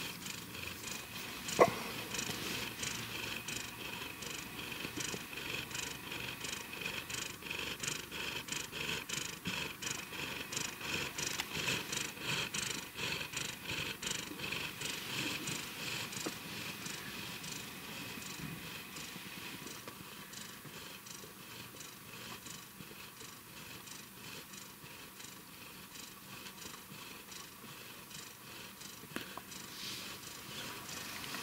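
Tabby-and-white domestic cat purring steadily close up, the purr of a contented cat; it grows softer through the second half. A single sharp click sounds about a second and a half in.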